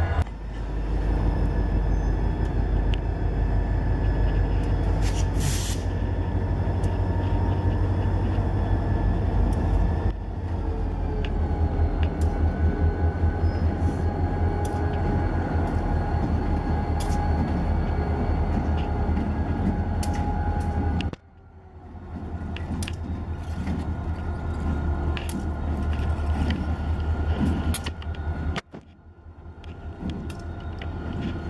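CSX diesel locomotives running slowly with a steady low engine drone, wheels clicking over rail joints as the train moves. A brief sharp air hiss comes about five seconds in. The sound drops away suddenly twice in the last third.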